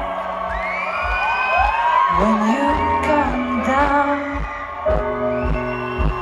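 Live band music played over a festival PA and recorded from the audience: a sung vocal line with gliding pitches over a steady low beat.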